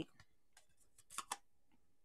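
Near silence, with two faint quick clicks a little over a second in, from stamping supplies being handled on a tabletop.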